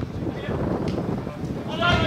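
Wind rumbling on the microphone, with a drawn-out shout from the pitch starting near the end.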